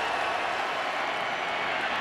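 Stadium crowd noise, a steady, even wash of many voices with no single sound standing out.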